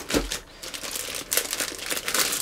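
Clear plastic bag crinkling as hands grip and pull at it around a robot vacuum, in irregular rustles. There is a dull low bump just after the start.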